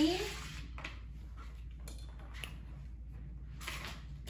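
Quiet room tone with a few soft taps, then near the end a short sliding scrape as a flat mop shoves a plastic Tupperware lid across a hardwood floor.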